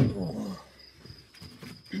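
A sharp click, then a short vocal sound lasting about half a second and falling in pitch. A faint, steady high chirring of crickets runs underneath.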